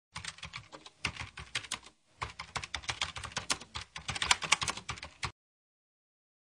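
Computer keyboard typing sound effect: rapid, uneven key clicks with a short pause about two seconds in, stopping abruptly about five seconds in.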